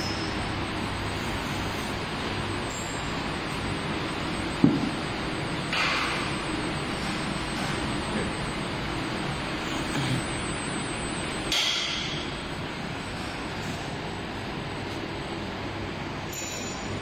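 Steady background noise of a gym hall, broken by one sharp knock about five seconds in and two short hissy rustles, one soon after the knock and one about twelve seconds in.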